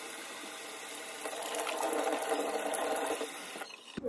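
Kitchen faucet running, its stream splashing into the sink as hands are rubbed under it; the sound cuts off suddenly near the end.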